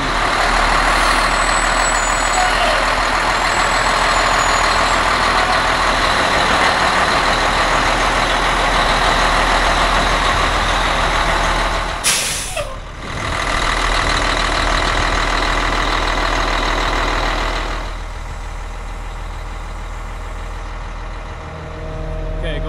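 Big Brute self-propelled crop sprayer running steadily as it is driven out, its engine loud throughout, with a short break about twelve seconds in and somewhat quieter for the last few seconds.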